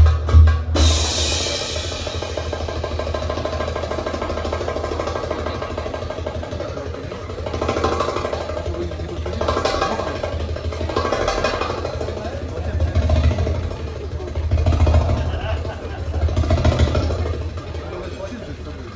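Middle Eastern drum music for a belly dance stops about a second in, at once followed by a burst of audience applause. Crowd voices and cheering follow, rising and falling in swells every second or two.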